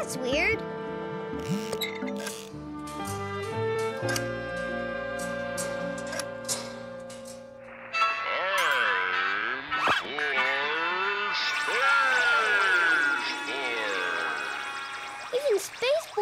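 Cartoon soundtrack: plucked, tinkly music for about eight seconds, then warbling sounds whose pitch wobbles up and down, slowed like a record at the wrong speed. The slow motion is the sign of a tempo synchronizer on the fritz.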